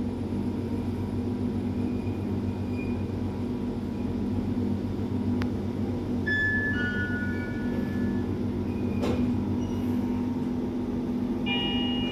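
Hitachi passenger lift car travelling up, with a steady low hum from the ride. About six seconds in, as it reaches the top floor, a two-note chime falls in pitch. A click comes about nine seconds in, and another chime begins near the end.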